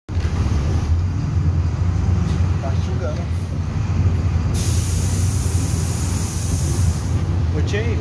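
Diesel engine of a Volkswagen 17-230 EOD city bus running with a steady low drone, heard from inside the passenger cabin. About halfway through, a loud hiss of released compressed air lasts two to three seconds, and faint voices come through once or twice.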